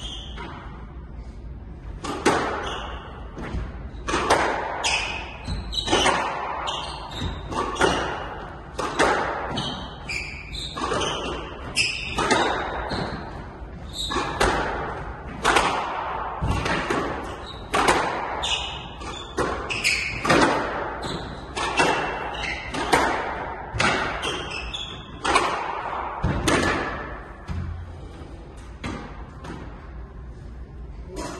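A squash rally: the rubber ball struck by racquets and smacking off the court walls in quick, irregular succession, with an echo from the hall. The hitting starts about two seconds in and stops a few seconds before the end.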